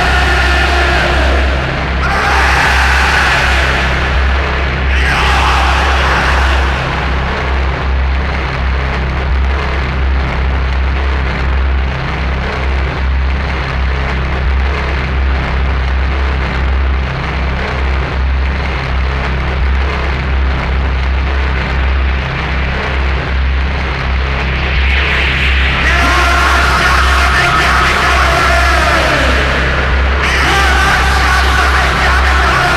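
Power electronics / dark industrial music: a heavy, wavering low drone under a thick haze of noise. Distorted, shouted vocal bursts come in over it in the first few seconds and again in the last few seconds.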